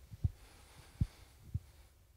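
Three short, dull low thumps about half a second apart: handling noise on a handheld microphone as the person holding it moves.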